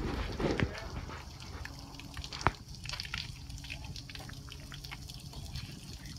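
Water draining and dripping from a fishing boat, with scattered clicks and one sharp knock about two and a half seconds in, over a low rumble of wind on the microphone.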